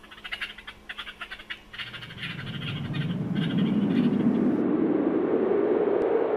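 A whooshing intro sound effect that rises in pitch and swells over about three seconds. It follows a second or two of scratchy, irregular clicking and crackling.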